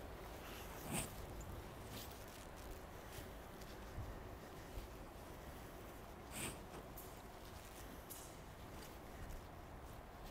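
Faint sounds of a horse working on the sand footing of an indoor arena, with a couple of brief soft breathy noises: one about a second in, one after about six seconds.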